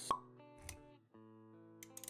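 Animated-intro sound effects over music: a sharp pop just after the start, a low thump a little later, then held music notes from about halfway through.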